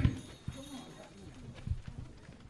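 A few dull, deep thumps and knocks, spaced about a second apart, with faint talking between them.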